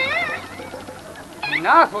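A man's short, high-pitched, wavering vocal cry right at the start, a comic exclamation in a stage sketch, followed by a man speaking near the end.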